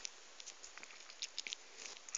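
Faint, scattered small clicks and ticks over quiet room tone.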